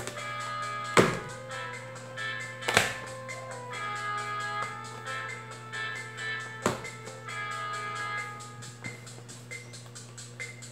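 Background music with three dull thuds, about one, three and seven seconds in, as hands knock on the bottom of an upturned plastic dish to loosen the set soap bars inside.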